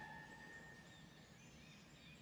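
Near silence: faint outdoor ambience with a few faint high chirps, as a held musical tone fades out in the first half second.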